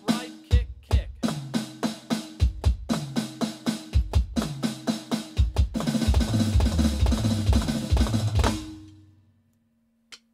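Electronic drum kit playing a fast 16th-note-triplet fill in repeating groups, each starting with a flam, sticked right-left-right-right on the pads followed by two bass drum strokes. From about six seconds in, cymbal crashes wash over the fill, and it all dies away shortly before nine seconds.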